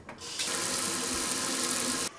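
Kitchen faucet spraying water onto vegetables in a colander in the sink: a steady hiss that builds up over the first half second and cuts off sharply at the end.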